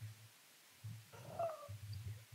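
Faint, low, closed-mouth hums and murmurs from a man's voice, a few short ones in a row, with no clear words.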